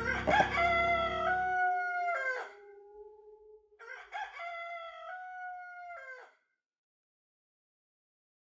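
A rooster crowing twice, each a long stepped cock-a-doodle-doo, the second beginning about four seconds in. A low music drone fades out under the first crow.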